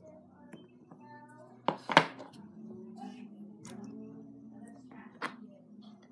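Plastic toy building bricks clacking: two sharp knocks close together about two seconds in, and a single one past five seconds.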